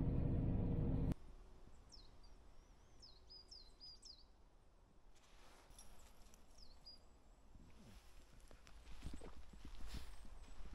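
Van engine and road rumble heard inside the cab, cut off abruptly about a second in. After that a quiet outdoor stretch follows, with a few small birds chirping in short, high, sweeping notes. Near the end come footsteps crunching on a gravel track.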